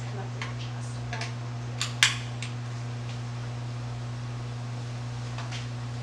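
Gurney seat-belt strap buckles being fastened: a few short metallic clicks and clinks in the first half, the loudest about two seconds in, over a steady low hum.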